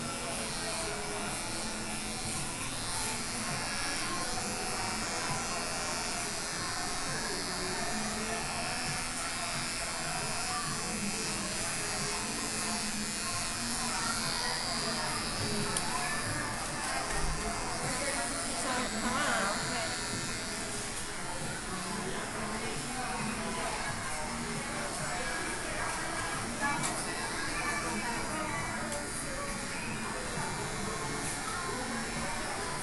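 Electric hair clippers buzzing while they cut a child's short hair.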